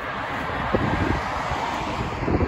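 A car driving past, tyre and road noise swelling and fading, with wind rumbling on the microphone.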